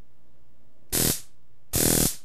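Keychain stun gun fired twice, its electric charge arcing between the electrodes with a loud buzz: a short burst about a second in, then a longer one near the end.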